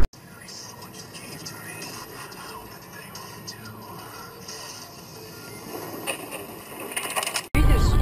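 Faint, hissy background noise with indistinct low sounds, cut off suddenly about seven and a half seconds in.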